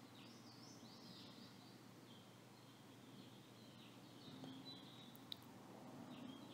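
Near silence, with faint, high bird chirping in the background.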